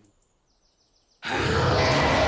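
Cartoon dragon roaring: after a near-silent pause, a loud, rasping roar bursts in suddenly just over a second in and is held.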